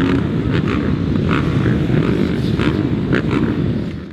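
A pack of 250-class motocross bikes running together on the starting line, a dense steady blur of engines with repeated revs surging through it. It fades out at the end.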